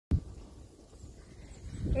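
Wind buffeting a phone's microphone: a low, uneven rumble, opening with a sharp knock of handling at the very start.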